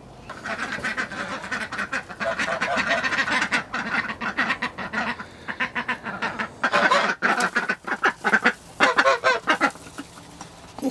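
A flock of Khaki Campbell ducks quacking in rapid, overlapping calls, with a Toulouse goose honking among them, clamouring for food. The calling grows busiest in the last few seconds.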